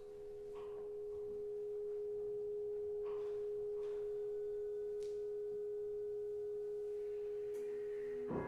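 A single held, almost pure tone near the A above middle C from the chamber ensemble, swelling in over the first two seconds and then steady, with a few faint clicks over it.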